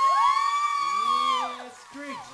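A person's long, high-pitched whoop of celebration: it rises at the start, holds for about a second and a half, then falls away. A lower voice joins it in the second half.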